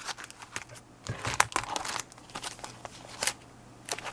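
Clear plastic stamp and die packages crinkling and rustling as they are handled and shuffled across a desk, in a run of short irregular crackles.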